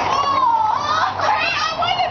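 Girls' high-pitched voices: excited calls and chatter with no clear words, overlapping one another.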